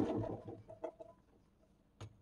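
Boiled soybeans and their cooking water poured from a pot into a stainless-steel mesh strainer, the pour tailing off within the first half second, followed by a couple of light clinks about a second in.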